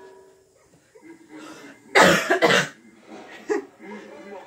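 A person coughing: two loud, harsh coughs about half a second apart, then a shorter one near the end.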